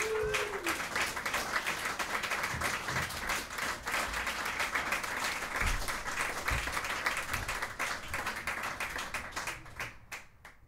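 Audience applauding a live band, a dense patter of many hands clapping that thins out near the end.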